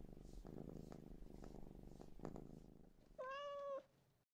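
A domestic cat purring faintly, then one short meow about three seconds in.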